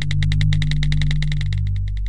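Intro jingle sound effect: a steady low drone under a fast, even ticking pulse of about fourteen ticks a second.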